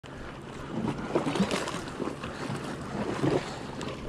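Sea water washing and splashing against rocks, with wind buffeting the microphone.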